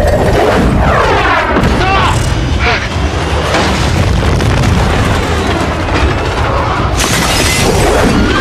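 Movie sound effects of a giant robot's rocket thruster firing continuously as it blasts upward, with heavy booms, under a film score.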